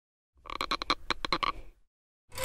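Cartoon sound effect: a rattling, croak-like run of about a dozen quick pulses lasting about a second and a half.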